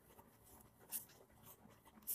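Faint scratches of a ballpoint pen on notebook paper, a few short strokes with the clearest about a second in, otherwise near silence.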